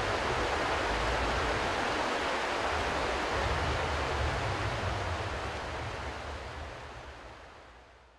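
Steady rushing of water, fading out over the last three seconds.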